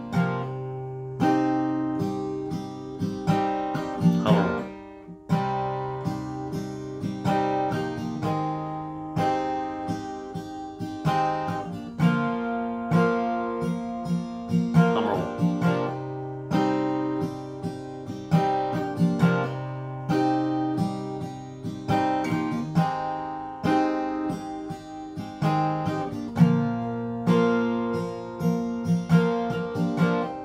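Steel-string acoustic guitar with a capo on the third fret, strummed in a down, down, up, up, up, down, down, up pattern and cycling through A minor, F and G chords.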